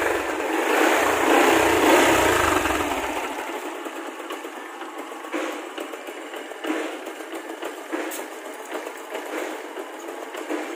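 Motorcycle engine running, stopping abruptly about three and a half seconds in; after that a quieter hiss with scattered sharp clicks.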